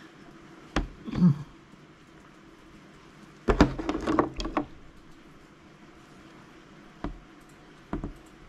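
Paint tubes and their caps being handled on a wooden work table: a couple of knocks about a second in, a louder cluster of clicks and knocks around the middle, and single sharp clicks near the end as a tube is opened to squeeze paint onto the palette.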